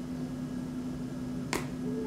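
A single sharp crack about one and a half seconds in as a mini Cadbury Creme Egg's chocolate shell is bitten, over a steady low hum in the room.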